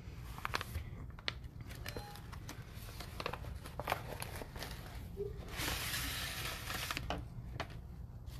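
A yellow paper mailing envelope being torn open and handled: scattered crinkles and paper rustles, with a longer stretch of tearing and rustling about five and a half seconds in.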